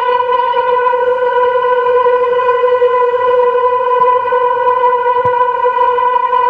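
A sustained musical drone: one held pitch with bright, evenly spaced overtones that stays level and unchanging throughout, with a faint click about five seconds in.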